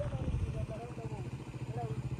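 Motorcycle engine idling with a steady low, even pulse, and faint voices in the background.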